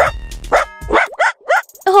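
Puppy yipping: five or six short, high barks in quick succession over light background music, which drops out about halfway through.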